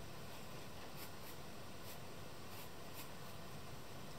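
Pen sketching on sketchbook paper: several short, scratchy strokes a second or so apart over a faint steady hiss.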